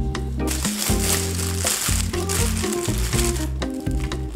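Loud crinkling of a clear plastic oven bag being handled, starting about half a second in and stopping near the end, over background music with a repeating bass line.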